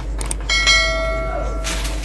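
Subscribe-button animation sound effect: a quick click or two, then a single bell-like notification ding about half a second in that rings for about a second and fades out.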